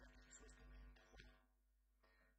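Near silence: a low steady hum from a digitised cassette recording, with faint indistinct sounds that fade out about one and a half seconds in.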